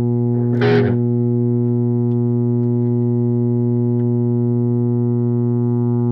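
Distorted electric guitar holding one low note at an even, unchanging level, with a brief scratchy noise over it just under a second in.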